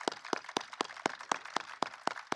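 Audience applause, many pairs of hands clapping, with separate sharp claps standing out.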